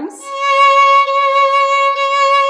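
Violin bowing a single steady C-sharp, second finger on the A string, held throughout.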